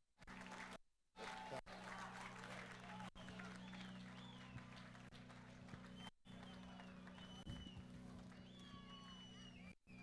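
Faint outdoor background: distant voices over a low steady hum, broken by several brief dropouts.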